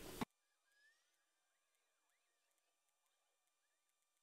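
Near silence: the sound track cuts out a moment after the start and stays silent.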